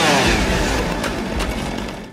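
A short laugh at the start, then a chainsaw engine running with a rough, low rumble that fades near the end.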